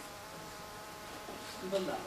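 A low, steady buzz made of several held tones, with a brief murmur of a voice near the end.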